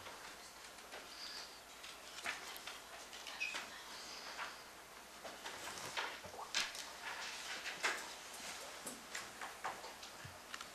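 Quiet room with scattered small clicks, taps and rustles of people handling things at a meeting table, a few sharper clicks in the second half.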